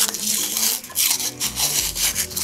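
Paper band being peeled and torn away from a moulded paper ball: uneven, scratchy rasps of paper pulling free.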